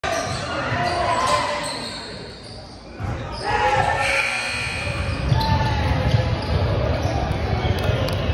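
Basketball game in a reverberant gym: a ball dribbling on the hardwood floor amid players' and spectators' voices calling out.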